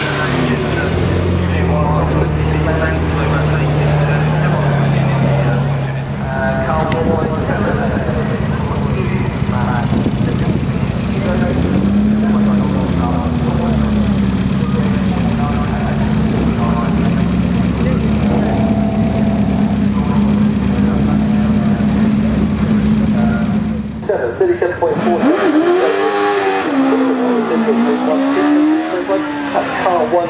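Racing and classic car engines running at low speed and pulling away, the engine note steady at first, then rising and falling about halfway through. For the last few seconds the engines drop back and a voice is heard over them.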